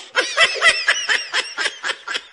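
A young man laughing in a rapid run of short giggling bursts, about four to five a second.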